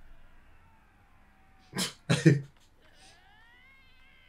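Faint, high-pitched meow-like calls that glide up and down, rising and falling in an arch near the end. A man's voice breaks in briefly and loudly about two seconds in.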